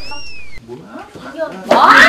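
A short, high, whistle-like squeak that rises and falls, then near the end a loud, high-pitched vocal cry from a person.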